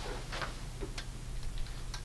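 A person's footsteps walking away: a few light, separate taps and scuffs over a low steady hum.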